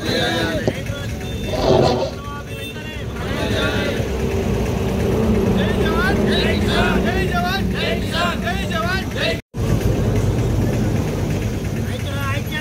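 Scattered voices speaking over a steady low rumble of road traffic, with a brief dropout to silence about nine and a half seconds in.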